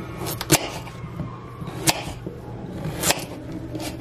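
Kitchen knife slicing through a raw potato and striking the wooden countertop beneath, four sharp clicks spread across a few seconds, one per slice.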